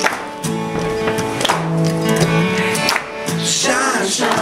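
Acoustic band playing live: strummed acoustic guitar chords ringing on, with a voice singing a wavering line near the end.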